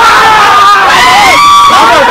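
A small group of men cheering and yelling together, loud and unbroken, in long held shouts of celebration.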